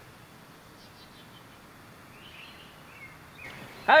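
Faint outdoor background ambience with a few faint, high bird chirps.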